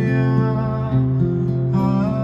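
Acoustic guitar strumming chords, with a change of chord partway through.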